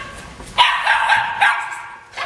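A small dog yipping and barking in short, high-pitched bursts, about four in quick succession, starting about half a second in.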